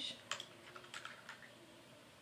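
A few faint clicks and taps from a small Maybelline Color Tattoo cream-eyeshadow pot being handled, bunched in the first second and a half, then quiet room tone.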